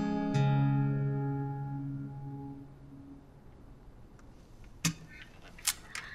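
Acoustic guitar's closing chord ringing out at the end of a folk song, with one last low bass note plucked just after the start, the whole chord fading away over about three seconds. Two or three brief soft clicks follow near the end.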